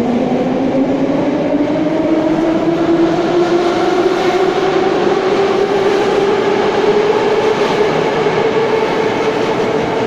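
Metro train accelerating out of the station: its traction motors whine, rising steadily in pitch, over the noise of the wheels on the rails.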